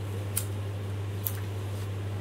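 Steady low electrical hum from the microphone and sound system, with two faint clicks, one about half a second in and one just past a second in.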